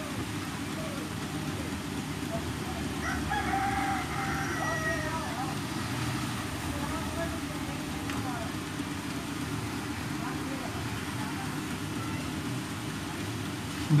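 Steady low background noise with a distant animal call: a wavering, pitched cry lasting about two seconds a few seconds in, and a fainter short call near the middle.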